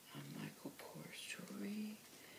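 Only speech: a woman's soft, close-up voice reading aloud.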